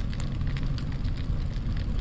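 Added fire sound effect: steady crackling flames, many small crackles over an even low rush.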